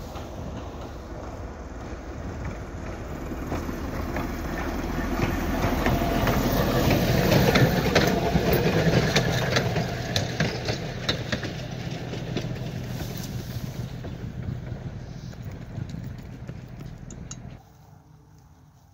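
The 1927 M-1 gas-electric motor car runs past with a caboose in tow. Its engine grows louder as it approaches, is loudest about eight seconds in, then fades away. There are sharp clicks of wheels over rail joints as it passes, and the sound cuts off suddenly just before the end.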